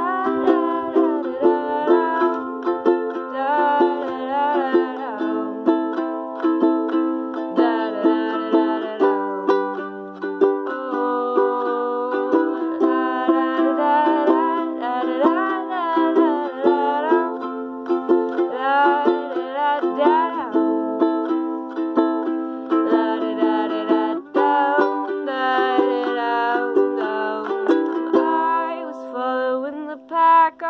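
Ukulele strummed steadily in a repeating chord pattern, with a young woman's voice singing a melody over it.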